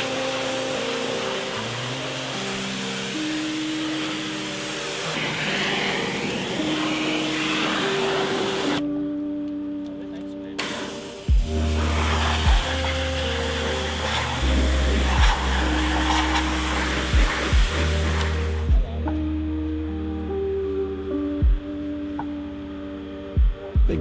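Water spraying hard from a hose wand against a car's door sill and floor, in two long stretches with a break of about two seconds between them. Background music plays throughout, with a heavy bass beat coming in about halfway.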